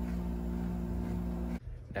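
Steady hum of several fixed tones over a low rumble, cutting off abruptly about three-quarters of the way through.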